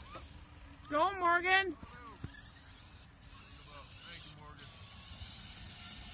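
A person's voice: one short, wavering call about a second in, over a faint steady background.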